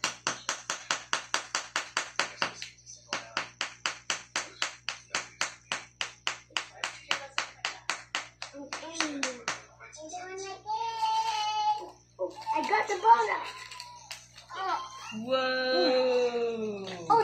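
Small wooden mallet tapping a wooden chisel into a dig-kit excavation block, quick steady strikes about five a second with a brief pause about two and a half seconds in. The tapping stops about nine seconds in and a child's wordless voice follows.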